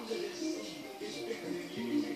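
A simple tune of steady held notes, stepping from one pitch to the next.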